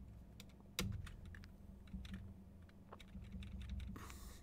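Computer keyboard being typed on: faint, irregular key clicks, with one louder keystroke a little under a second in, over a low steady hum.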